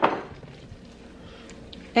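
Faint, soft squishing of gloved hands kneading a raw ground-meat mixture in a stainless steel bowl.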